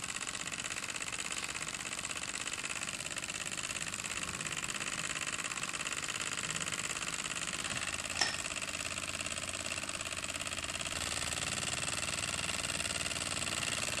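Microcosm M88 mini walking-beam steam engine running fast and steady, its piston, slide valve and flywheel making a rapid, even mechanical beat, at a speed the owner calls good for it. One sharp click about eight seconds in.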